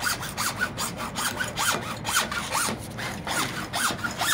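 A hand hacksaw cutting through PVC pipe in steady back-and-forth strokes, about two to three a second. Each stroke gives a rasping scrape with a short squeak from the blade.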